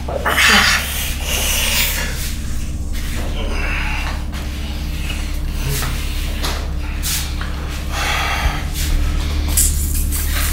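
A man's heavy, strained breaths and snorts, in short bursts every second or two, as he grimaces over a drink he says is making him feel ill, over a steady low hum.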